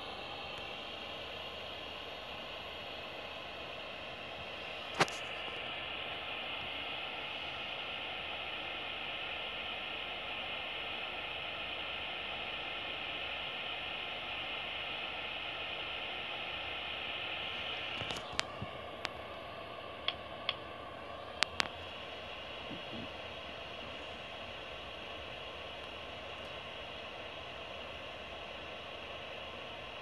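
Ghost-radio app on a tablet playing steady hiss-like static, with one sharp click about five seconds in and a scatter of clicks around eighteen to twenty-two seconds.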